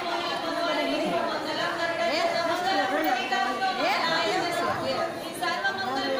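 Crowd chatter: many people talking at once in a large, echoing hall, their voices overlapping.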